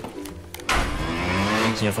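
A motorbike engine running as it passes close by, cutting in suddenly about two-thirds of a second in and lasting just over a second.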